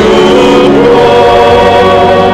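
A choir of many voices singing a hymn together, in long held notes that move to a new note about two-thirds of a second in.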